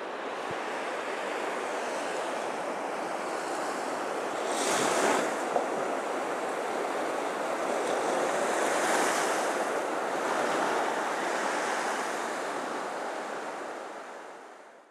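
Ocean waves washing in, a steady rush that swells about five seconds in and again around nine seconds, then fades out at the end.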